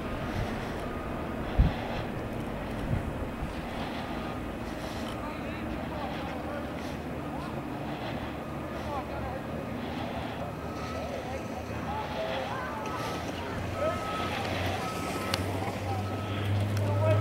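Steady wind on the microphone during a chairlift ride, with faint voices in the background and a single sharp knock about one and a half seconds in. Near the end a low hum builds as the chair nears a lift tower, with a short whine repeating several times.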